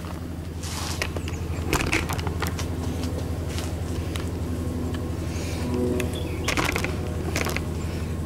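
A steady low mechanical hum runs throughout, with a few scattered clicks and scuffs, the loudest near the end.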